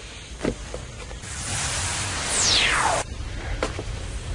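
Steam hissing, rising about a second in, with a falling whistling sweep near its end, then cutting off suddenly about three seconds in.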